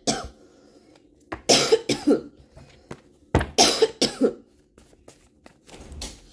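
A person coughing in two bouts of a few coughs each, the first about a second and a half in and the second about three and a half seconds in.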